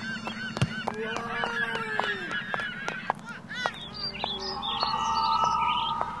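Geese honking: many short rising-and-falling calls overlapping one another, with a steadier held tone over the last second or so.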